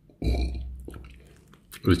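A man burps once: a single voiced belch starting about a quarter second in and fading out over about a second.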